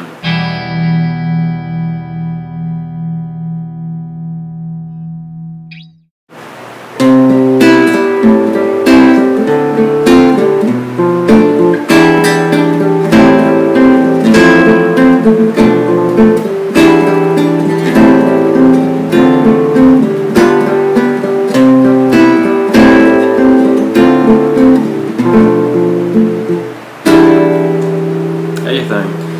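Nylon-string classical guitar playing a C-major chord progression with substituted chords. A held chord rings and slowly fades for about six seconds and breaks off. After a brief gap, steady picked arpeggios through changing chords run on to the end.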